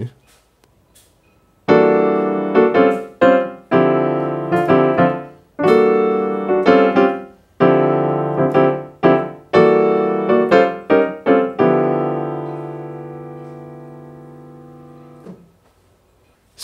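Piano playing a jazz minor II-V-I in D minor (E minor 7 flat 5, A altered dominant, D minor 11) as short, syncopated chord stabs, starting about two seconds in. It ends on a long held D minor 11 chord that rings and slowly fades before stopping shortly before the end.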